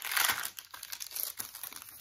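Paper pages of a handmade journal rustling and crinkling as a page is turned by hand. The loudest rustle comes in the first half second, followed by softer crackles.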